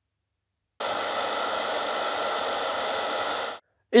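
High-power hand-held hair dryer running for about three seconds: a steady blowing noise that starts abruptly about a second in and cuts off shortly before the end.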